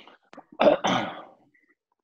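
A person clearing their throat: two short, rough coughs a little over half a second in, heard through a video-call connection.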